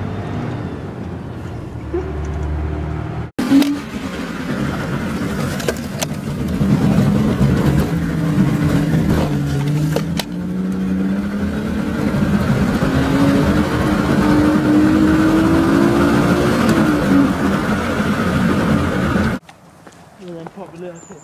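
An engine running with a steady hum, cut off suddenly about three seconds in. Another stretch of engine sound follows, its pitch sliding down and then climbing slowly as it revs, and it stops abruptly near the end.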